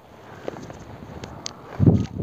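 Footsteps and rustling in dry bamboo leaf litter, with a few light crackles, then a low muffled thump on the microphone near the end.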